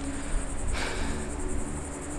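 Outdoor seaside ambience: insects chirring steadily at a high pitch over the low rumble of ocean surf, with the hiss of a breaking wave swelling in about three-quarters of a second in.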